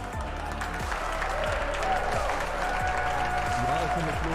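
Applause from a group of people, growing louder about a second in, over background music.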